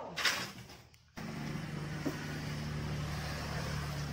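A brief rustle or scrape, then about a second in a steady low motor hum begins abruptly and holds level.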